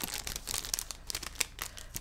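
Mail packaging being handled and opened by hand: a continuous run of crinkling and small sharp crackles.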